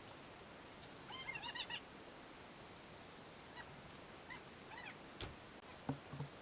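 Faint animal calls: a quick run of repeated high notes about a second in, then a few short falling calls, over a steady background hiss. A sharp click comes about five seconds in.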